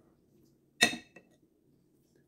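One short, sharp clack of a metal spoon against a dish about a second in, followed by a faint tick.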